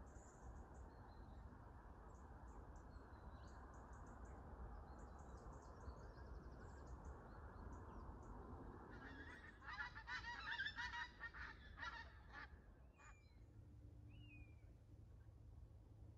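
Wild geese honking: a burst of overlapping calls lasting about three seconds just past the middle, over a faint, steady outdoor background. A few faint small-bird chirps follow near the end.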